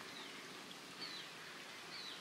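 Quiet outdoor background hiss with two faint, high, short chirps from birds about a second apart.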